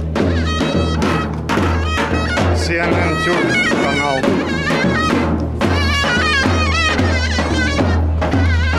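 Zurna and davul played live: a shrill, reedy shawm melody with wavering ornaments over a steady bass drum beat.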